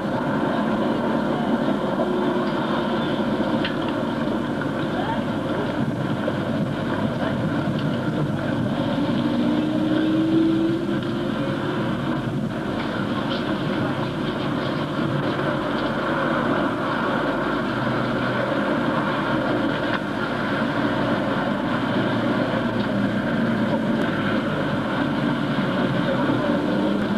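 Busy street ambience: a crowd's mingled chatter over the steady noise of road traffic.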